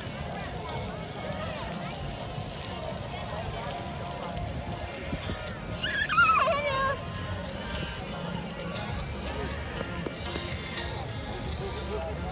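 Beach background: a steady low rumble with the faint voices of a busy beach. About six seconds in, a child's high-pitched voice cries out for about a second.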